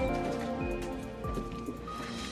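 Soft film-score music with sustained held notes, over a steady noisy hiss.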